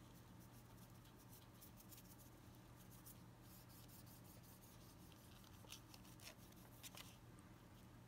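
Near silence: a steady low room hum with faint, scattered scratchy ticks of a paintbrush stroking paint onto a polymer-clay broom handle.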